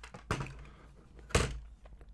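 Two knocks of a plastic model body section handled and set down on a cutting mat, the second about a second later and louder.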